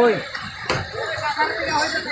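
Onlookers' voices calling out, loudest right at the start, with one short sharp knock a little under a second in.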